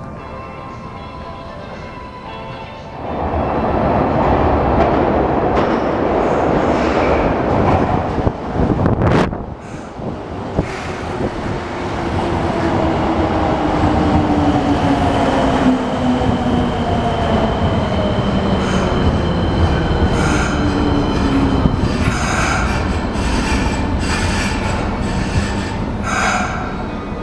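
Subway train running into the platform from about three seconds in, its motor whine falling steadily in pitch as it slows to a stop.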